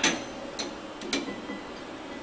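A few sharp metal clicks with a faint ring: the loudest at the very start, another about half a second in, and a quick pair about a second in.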